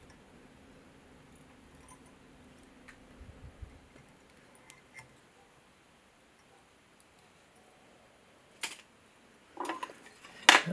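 Faint small ticks and clicks of a whip-finish tool and tying thread being worked at a fly-tying vise, with one sharper click near the end.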